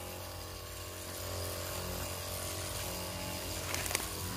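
Motorized 20-litre disinfectant sprayer running steadily, a low pump hum under the hiss of spray from the wand. A short click near the end.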